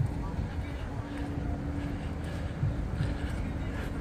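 Street ambience: a steady low rumble of nearby road traffic with a faint steady hum.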